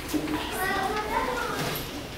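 Young children's high-pitched voices talking and calling out, dying down near the end.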